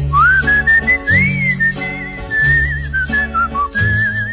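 A whistled melody, gliding up and down with a wavering vibrato, over backing music with bass notes and a ticking beat.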